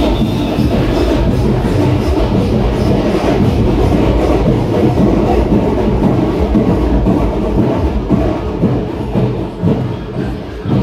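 Loud, continuous festival procession music dominated by heavy, rapid drumming and bass, with no break.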